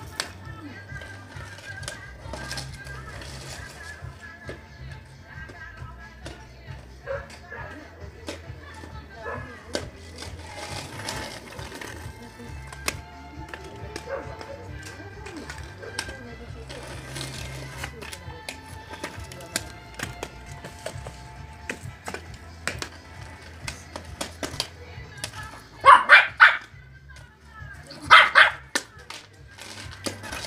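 Small dog barking in two short bursts near the end, over background music and faint distant voices.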